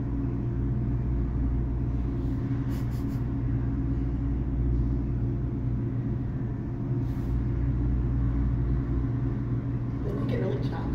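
Steady low mechanical hum and rumble, with a few faint brief hisses about three seconds in and again about seven seconds in.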